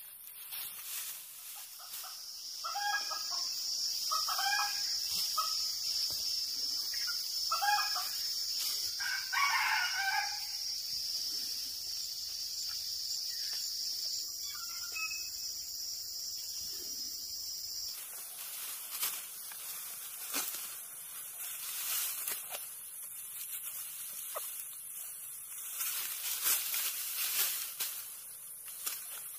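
A rooster crowing several times over a steady high insect buzz, which cuts off suddenly about two-thirds of the way through. Then rustling and crackling of ripe rice stalks being grasped and cut by hand.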